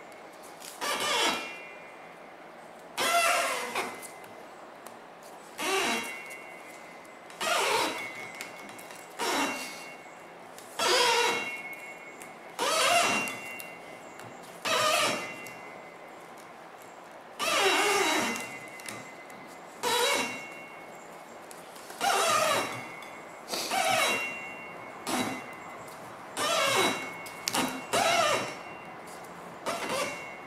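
Thin jute string squeaking as it is pulled through a cardboard tensioner while being wound tight around a firework shell break. Short squeaks that fall in pitch, about one every two seconds, one for each pull of the string.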